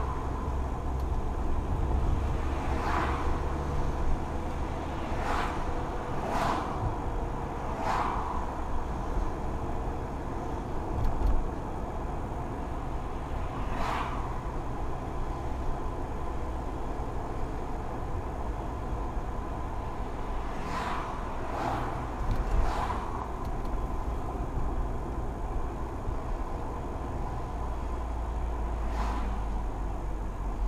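Steady low rumble of a Mercedes-Benz car driving slowly through city streets, heard from inside the cabin. Brief sharp sounds come every few seconds, and a faint steady high tone runs underneath.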